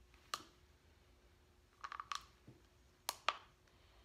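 Scattered sharp clicks and taps from small plastic cups of coloured resin being handled: one near the start, a quick cluster of three around two seconds in, and two close together just after three seconds.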